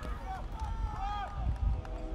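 Soccer players shouting calls across the pitch during play, voices rising and falling in long drawn-out shouts, over a low rumble of wind on the microphone.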